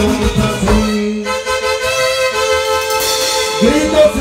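Live dance band music played loud. The bass and percussion beat stops about a second in, leaving held notes on a melody instrument, and the beat comes back near the end.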